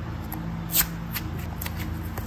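Hands pulling apart a plastic toy egg and squeezing the soft slime inside: a few sharp crackling clicks, the loudest just under a second in.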